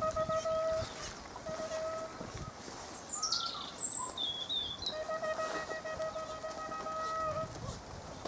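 Fox-hunting horn blown in three long held notes, the huntsman's call hunting the hounds on after a fox. A bird calls once about halfway through.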